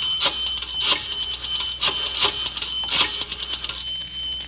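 Radio sound effect of a pay-phone call being dialed: groups of rapid mechanical clicks from a rotary telephone dial.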